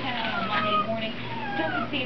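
A few drawn-out high-pitched cries, each sliding down in pitch, over faint background talk.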